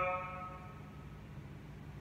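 The reverberant tail of a man's short, loud sung note dying away over about a second in a large, echoing function room. After that there is only quiet room tone with a faint, steady low hum.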